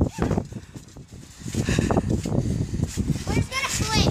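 Repeated soft thuds of bare feet landing on a trampoline mat as people bounce, with a child's voice calling out near the end.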